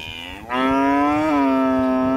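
A cow moos once: a long, steady, low call that comes in loud about half a second in and is still going at the end. The cattle are calling for feed.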